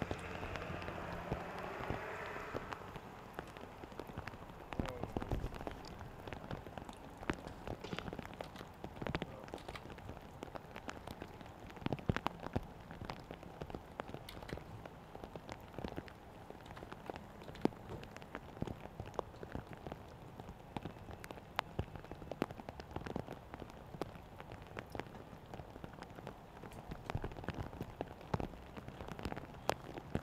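Burning paper ballots crackling: a dense run of small, irregular pops over a soft hiss.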